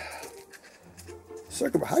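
Faint small handling noises as a thin wire lead is pulled and threaded under a plastic model frame, over a low steady hum; speech begins near the end.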